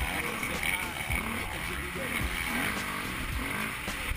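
Kawasaki KX450 single-cylinder four-stroke motocross engine under way on a dirt track, its revs rising and falling as the rider works the throttle, heard from a helmet-mounted camera.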